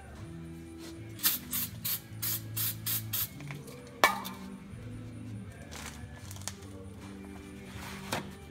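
Aerosol spray can sprayed in about seven short hissing bursts over two seconds, followed by a single sharp click.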